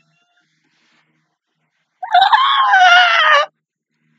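A woman's high-pitched squeal of laughter: one drawn-out shriek about a second and a half long, starting about two seconds in, rising and then falling in pitch.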